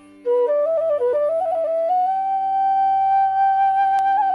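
Bamboo bansuri (transverse flute) being played: a quick run of notes climbing in pitch starts a moment in, then settles into one long held note from about two seconds in. A steady low drone sounds underneath.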